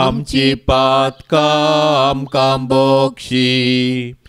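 A man chanting a Konkani rosary prayer in short phrases on a near-level pitch, with brief pauses between them.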